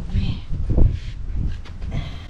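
A few dull thumps and rustling as a netted red drum is set down on concrete and handled, the loudest thump a little under a second in.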